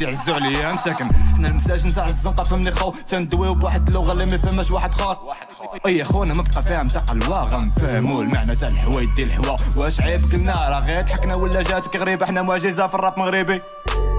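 Moroccan trap song: a rapper rapping in Moroccan Arabic over a trap-heavy beat with deep bass and hi-hats. The beat briefly drops out about five seconds in.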